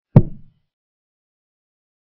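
Chess move sound effect: one short wooden knock, like a piece set down on a board, fading within half a second as a pawn is played.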